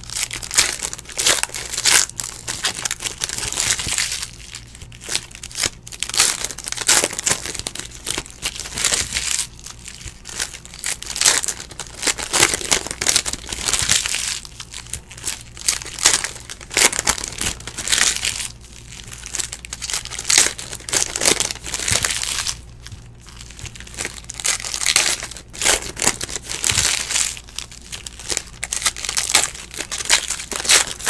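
Foil trading-card pack wrappers crinkling and tearing in a run of irregular rustling bursts as packs are ripped open by hand.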